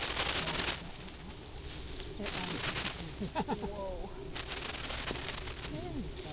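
Dog training whistle blown three times, each blast a steady, shrill single tone: two short blasts, then a longer one of about a second and a half.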